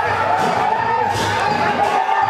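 Festival procession music for a Lakhe dance: drums beating with crashes of cymbals about half a second and a second in, over crowd noise and a steady high held tone.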